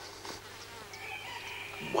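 Faint buzzing of a flying insect, its pitch wavering slowly, over a steady low hum.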